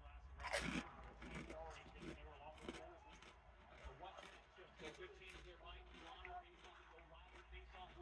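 A ridged Ruffles potato chip being bitten with one crunch about half a second in, then chewed with faint, irregular crunching.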